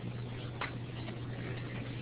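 Background of an open microphone line in a pause between speech: a steady low hum under a faint even hiss, with one soft click a little over half a second in.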